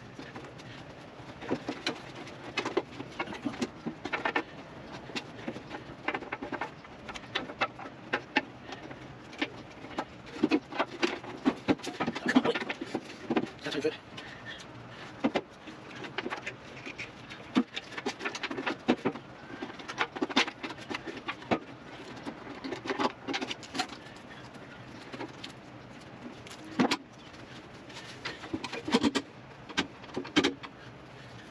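Irregular knocks, clicks and scraping of hand work on a motorcycle's steel frame and fuel tank as the tank is worked loose.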